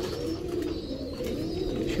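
Domestic pigeons cooing: low, wavering coos.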